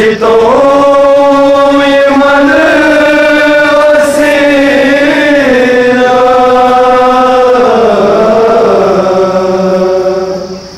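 Men chanting a Muharram nauha (lament) into a microphone: one long, drawn-out line held nearly the whole time, its pitch sliding down near the end.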